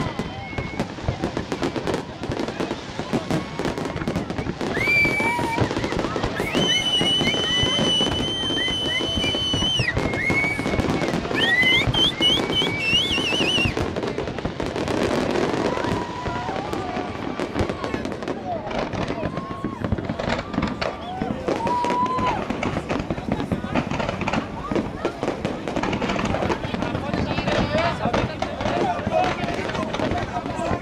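Fireworks display: a dense run of crackles and bangs from aerial shells going off, with crowd voices mixed in. High whistling tones, some held and some gliding, sound from about five to fourteen seconds in.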